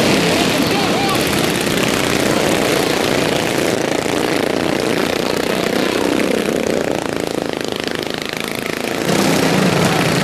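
Several racing lawnmowers with single-cylinder overhead-valve engines running hard in a pack. The engine noise eases off a little as they go to the far side of the track and swells again about nine seconds in as the pack comes back around.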